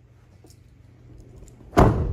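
A 2024 GMC Sierra 2500 crew cab's rear door is shut once near the end, a single loud thud over a faint low hum.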